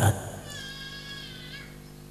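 A faint, high, drawn-out cry lasting about a second and falling slightly in pitch, over a steady low hum.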